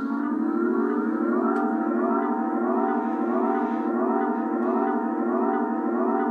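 Steel guitar played with a slide bar: the same upward glide repeats about twice a second over a steady held low note, giving a wailing, siren-like effect.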